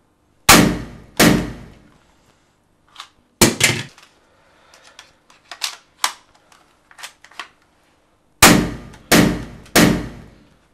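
Pistol shots fired in a small bathroom, each ringing on briefly: two about a second apart, two in quick succession a few seconds later, then three evenly spaced shots near the end. Quieter clicks of the gun being handled come between them.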